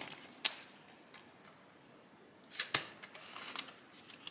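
Hands handling paper banknotes and a clear plastic binder: a few sharp clicks, the loudest about two and a half seconds in, with light rustling of paper and plastic near the end.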